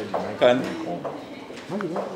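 A bird calling with a short, low, rising-and-falling note near the end, behind a man's speech.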